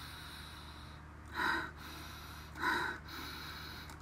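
A woman sniffing twice through her nose, each sniff short and a little over a second apart, as she smells a scented wax bar.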